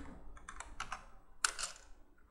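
Computer keyboard typing: a few scattered keystrokes, then a quicker run of clicks about one and a half seconds in.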